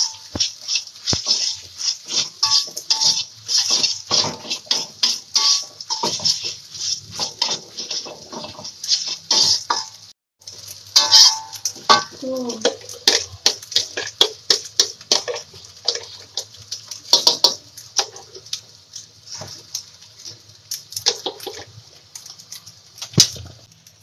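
Kitchen dishes and utensils clattering as they are handled: a steady run of sharp clinks and knocks of bowls, pans and cutlery, with a brief break about ten seconds in.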